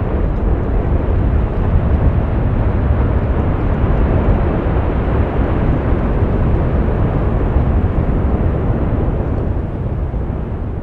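Erupting volcanic vent throwing out lava: a steady, deep rushing noise, heaviest in the bass, beginning to fade near the end.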